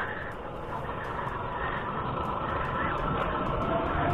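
Motorcycle riding along a road: steady engine and wind noise, creeping slightly louder.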